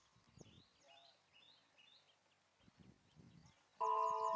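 Small birds chirping faintly, with a few soft low rumbles. Near the end a bright, chime-like musical chord starts suddenly, is the loudest sound, and rings on.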